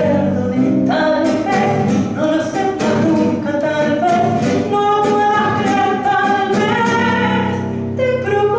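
A woman singing a tango into a microphone, accompanied by a classical guitar, holding a long note near the end.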